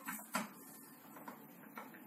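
Light clicks and taps from hands handling a bare guitar neck and a steel straightedge on a workbench: two sharper clicks near the start, then a few faint, irregular ticks.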